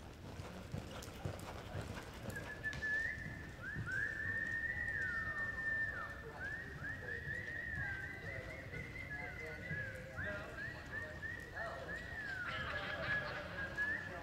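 Palomino reining horse loping on soft arena dirt, its hoofbeats a dull uneven drumming. Over it runs a string of high, squeaky chirps that mostly fall in pitch, starting about two seconds in and repeating through the rest.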